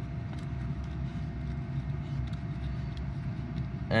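Steady low background rumble with a few faint light clicks, as small coaxial connectors are handled and fitted to the NanoVNA.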